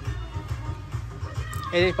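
Background music with a steady, pulsing low bass beat.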